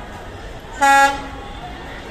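Diesel locomotive's horn giving one short, loud toot about a second in, over the hum of voices on the platform.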